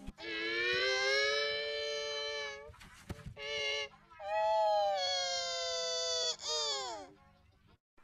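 Electronically pitch-shifted, distorted audio: long wailing tones in four stretches, the last two sliding down in pitch at their ends, then a quiet last second.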